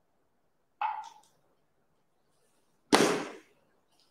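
Two short, sharp noises about two seconds apart, the second louder and fuller, each dying away within about half a second.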